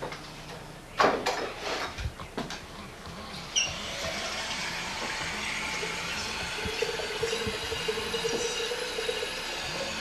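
A few knocks and clatters of a glass coffee carafe being handled at a kitchen sink. From about three seconds in, the faucet runs steadily into the carafe as it fills with water.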